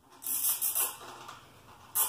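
Two short scraping rustles of hard plastic being handled: a longer one just after the start and a brief one near the end. They come from working the milk crate's PVC latch and its zip tie.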